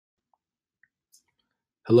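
Near silence broken by three faint, short clicks, then a voice begins speaking just before the end.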